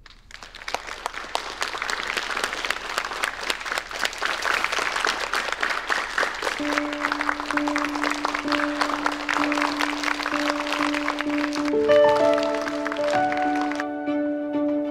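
Audience applauding, the clapping building up over the first second or two and stopping abruptly near the end. A held low note of background music comes in about halfway through, and piano notes follow near the end.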